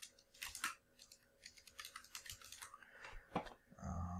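Faint clicking of a computer keyboard: a run of separate keystrokes typing a word into a search box.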